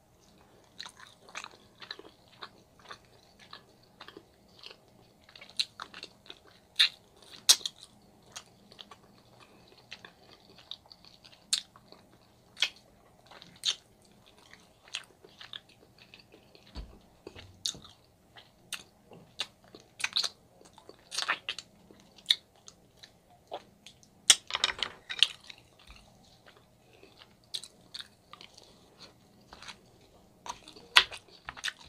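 Close-miked chewing of meat from ribs and oxtails, with irregular sharp mouth clicks and smacks throughout and a louder run of them about three-quarters of the way through.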